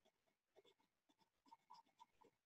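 Faint scratching of a colored pencil on paper: short, irregular strokes as a small picture is colored in, a little busier in the second half.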